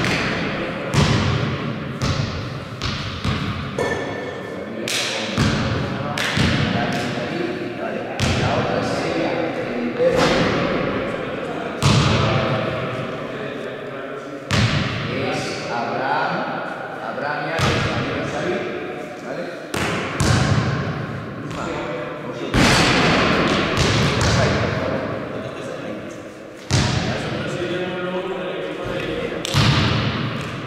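Basketball bouncing and thudding on a sports-hall court in play, with repeated sharp impacts that ring on in the hall's echo. Indistinct players' voices run underneath.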